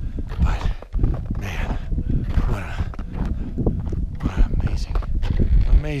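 A climber breathing hard at high altitude while walking, with a noisy breath about once a second, crunching footsteps in snow and wind rumbling on the microphone.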